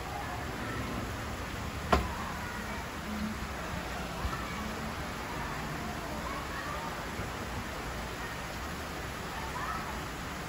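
Rain that has just started all of a sudden, an even steady hiss, with one sharp knock about two seconds in.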